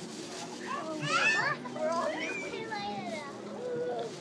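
Children's voices shouting and calling out over one another, with a loud high-pitched squeal about a second in.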